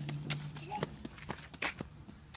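Quick, light running footsteps of a toddler in sneakers, slapping across a rubber mat and onto packed dirt, about three steps a second.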